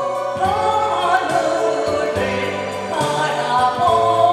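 A woman singing a Korean trot song into a microphone over a backing track with a bass line, holding long notes with vibrato.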